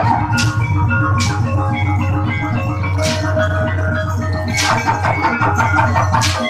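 Javanese gamelan music accompanying an Ebeg dance: struck metal keys ringing out in a running melody over drum strokes, with a deep steady low tone underneath.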